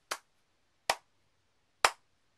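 A man clapping his hands slowly, three single sharp claps about a second apart, each a little louder than the one before.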